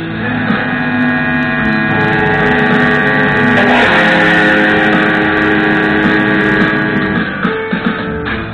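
Electric guitar through an amplifier, its notes left ringing into a long, steady drone of several held tones that swells and holds for several seconds, over a mains hum from the amp. Near the end the drone breaks up into a few short plucks and knocks.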